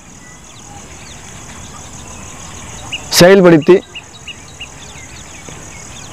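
A steady high-pitched insect chorus, with scattered faint bird chirps. A man's voice says one short word a little past halfway.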